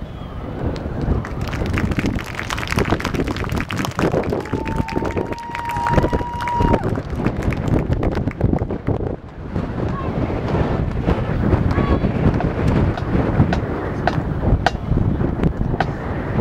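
Wind buffeting the microphone over outdoor crowd noise, with a steady high tone held for about two and a half seconds starting about four seconds in.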